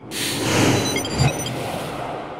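Whoosh sound effect of a TV intro graphic: a broad rush of noise that starts suddenly and slowly fades, with a low thud about a second in and a few faint high chimes.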